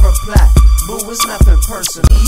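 Hip hop track: rapping over a beat with heavy bass hits and sharp percussion strikes.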